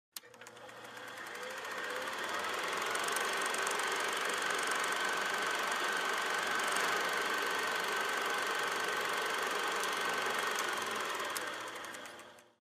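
A small machine running with a rapid, even clatter and a steady high tone. It fades in over the first two seconds, holds steady, and fades out at the very end.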